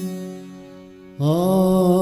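Harmonium sounding a steady held note, joined about a second in by a man's voice singing a long, louder held note with vibrato, opening a devotional Gujarati folk song.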